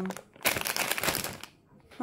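A plastic bag of marshmallows crinkling in the hand as it is held up and handled, for about a second.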